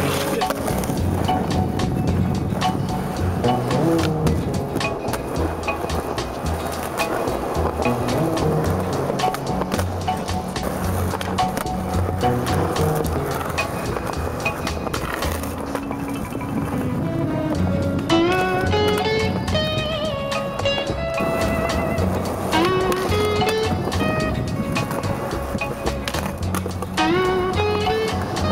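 Background music with a stepping melody, over the sound of a skateboard: wheels rolling on concrete, with the board clacking on and off a concrete curb ledge.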